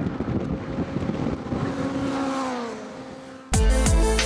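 Super 7 race car engines running at speed on the circuit. One engine note drops in pitch and fades as the car goes by. About three and a half seconds in, loud electronic music cuts in suddenly.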